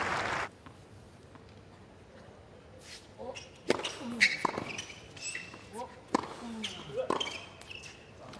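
Tennis rally on a hard court, starting about three seconds in: sharp, irregularly spaced pops of racquets striking the ball and the ball bouncing on the court.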